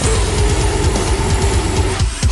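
Deathcore music: a held, distorted guitar chord over rapid double-kick bass drumming.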